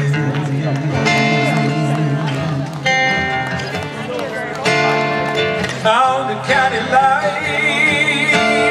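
Live country band music: an acoustic guitar strumming under an electric guitar playing lead, the lead notes wavering and bending near the end.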